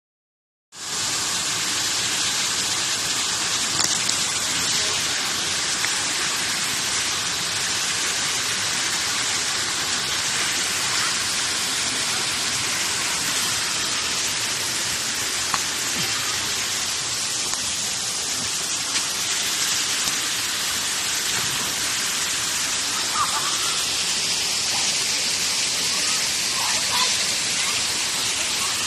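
Small jungle waterfall and water running over rocks: a steady, hissing rush that sets in about a second in and holds at one level throughout.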